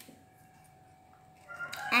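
Mostly a quiet pause. About a second and a half in comes a faint rustle of paper flashcards being handled, and a girl's high voice begins right at the end.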